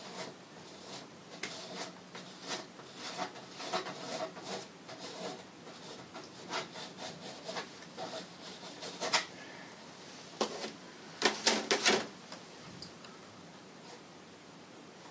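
Palette knife scraping and dabbing oil paint onto a stretched canvas in a run of short strokes, loudest in a quick flurry near the end.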